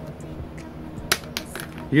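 A few small sharp clicks of metal Nakamichi banana plug parts being handled and fitted together, the loudest about a second in, over faint background music.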